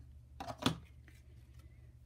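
A sheet of cardstock being handled and turned over, with a short faint rustle and one sharp click a little over half a second in, then quiet room tone.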